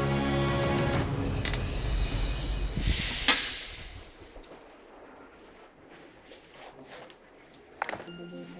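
Dramatic suspense music. Sustained tones give way to a rising swell that ends in a sharp hit about three seconds in, then the music falls away to a low, quiet tension.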